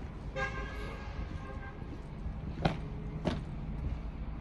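A vehicle horn sounds once for about a second and a half over a low background rumble, followed by two sharp knocks a little over half a second apart.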